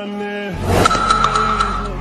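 Background music cut by a loud added sound effect about half a second in: a rushing noise that sweeps upward and holds a steady high squeal, like a car's tyre screech, for over a second.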